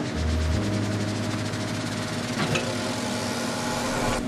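Elegoo Jupiter resin 3D printer's Z-axis stepper motor running steadily as it drives the lead screw and lifts the build plate out of the resin vat, a steady motor hum with a few held tones.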